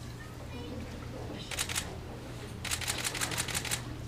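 Camera shutters firing in bursts: a short run of clicks, then a longer rapid burst of about eight clicks a second.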